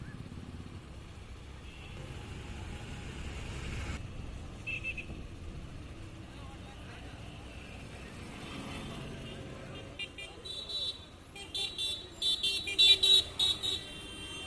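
Roadside street sound: a low rumble of passing traffic with people's voices and brief vehicle horn toots, turning into a run of louder, choppy sounds in the last few seconds.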